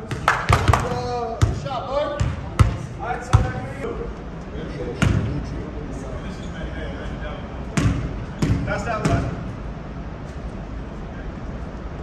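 A basketball bouncing on a gym floor: a handful of separate bounces in the first few seconds and a few more past the middle, with players' voices in the background.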